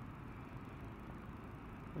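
Steady low engine and road noise of a motorcycle moving slowly through traffic, heard from its mounted camera.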